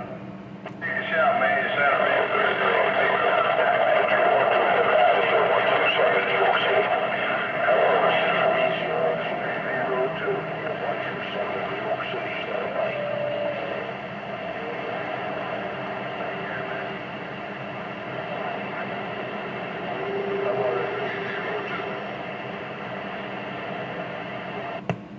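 CB radio speaker on channel 19, receiving long-distance skip: garbled, unintelligible distant voices buried in static and steady heterodyne whistles. It is loudest in the first half and fades somewhat after about the middle.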